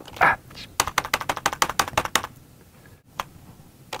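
Computer keyboard typed on by hands covered in socks: a fast run of key taps, about ten a second for over a second, then a single tap near the end.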